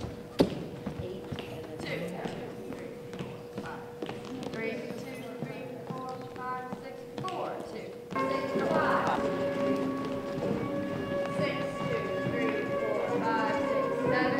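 Footfalls and taps of dancers moving on a stage floor, with scattered voices and one sharp knock near the start. About eight seconds in, recorded music comes in louder, with held instrumental tones.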